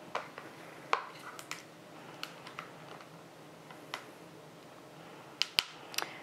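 A plastic tub of dashi-miso paste being opened and handled: scattered sharp plastic clicks and light crackles, a sharper pair near the end.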